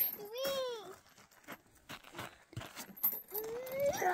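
Two short high-pitched vocal cries: one rises and falls about half a second in, and another rises near the end, with a few faint clicks and near silence between them.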